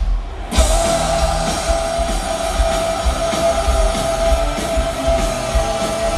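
Hard rock band playing live with electric guitars, bass and drum kit. A short stop in the first half-second, then the full band comes back in with a held guitar note over the riff.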